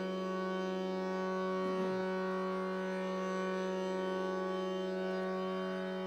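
Harmonium holding one steady reedy drone note as the opening ground before the singing, with a short low sound falling in pitch about two seconds in.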